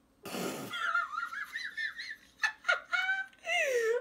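A woman laughing: a breathy burst, then high-pitched, wavering giggles in short bouts, ending on a long note that falls in pitch.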